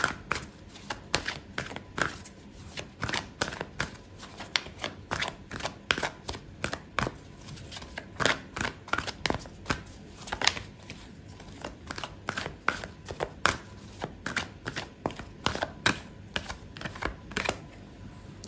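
A deck of oracle cards being shuffled by hand: an irregular run of short card clicks and slaps, two or three a second.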